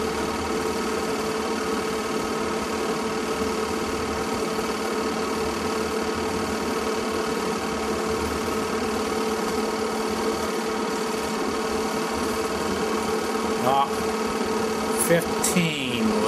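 Film projector running with a steady, unchanging mechanical hum.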